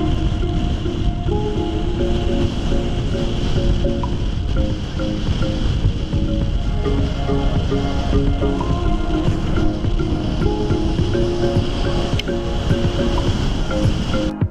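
Background music over the steady rush of wind and road noise from a car driving at speed on a highway.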